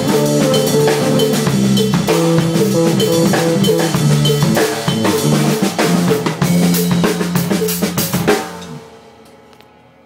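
Live funk groove on a drum kit, with kick, snare and cymbals, under a pitched bass line. The playing stops about eight seconds in and the instruments ring out and fade.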